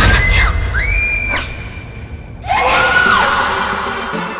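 High-pitched screams over dramatic action music. One short scream comes at the start and a longer one about a second in. After a brief drop, a further scream about three seconds in falls away at its end.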